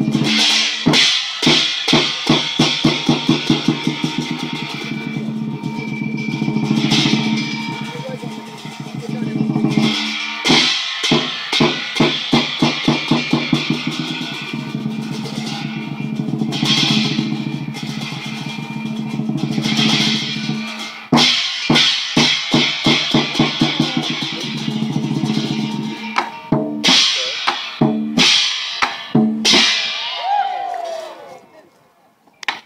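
Lion dance percussion: a large Chinese lion drum beaten in rhythmic runs of quick strokes and rolls, with a gong and hand cymbals crashing along on the beat. The runs build and ease off, with short pauses between them.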